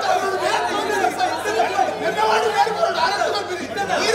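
A crowd of men arguing, many voices talking over one another at once, in a large echoing hall.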